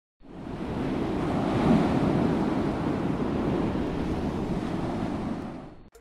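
A steady rushing noise, full and deep, rises in over the first half second and holds. It fades away near the end, then stops abruptly.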